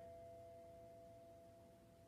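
Faint, steady drone of two held tones sounding together, slowly growing fainter.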